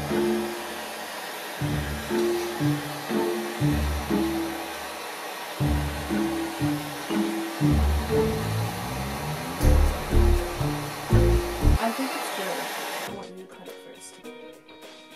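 Propane hand torch hissing steadily as its flame heats a kitchen knife blade, under background music; the hiss cuts off suddenly near the end as the torch is shut off.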